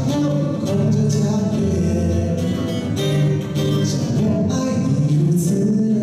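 A man singing to his own acoustic guitar, a solo live performance of a song.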